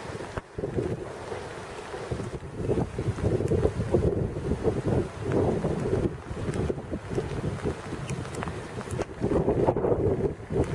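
Wind buffeting the microphone, an uneven low rumble that swells and dies back in gusts, with stronger gusts a few seconds in and again near the end.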